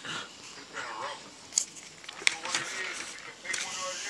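Paper coupon insert pages being flipped and handled: paper rustling, with sharp crinkles about a second and a half and two and a quarter seconds in. A voice is heard faintly in the background.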